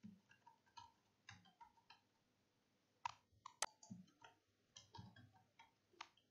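Near silence broken by scattered faint clicks of computer keyboard keys and a mouse, with a few louder clicks about three to four seconds in.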